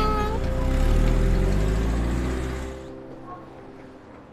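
A car's engine rumbling close by, which then fades out about three seconds in, with soft background music underneath.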